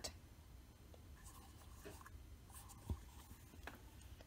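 Near silence: faint rustling of objects being handled, with one soft tap just before three seconds in, over a low steady hum.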